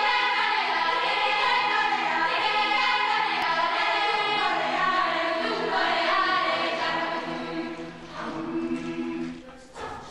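Mixed youth choir singing in several voice parts, with long held chords; the singing drops away near the end.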